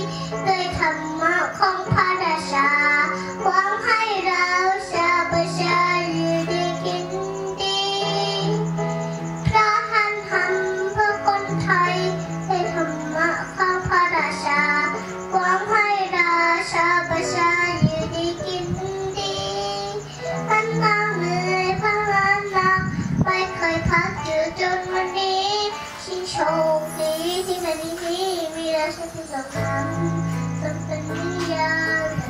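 A young girl singing into a microphone over a backing music track.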